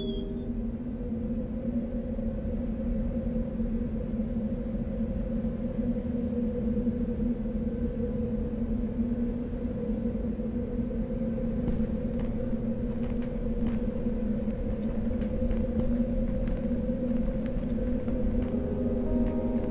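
A steady low rumble with a droning hum underneath, and a few faint clicks in the second half.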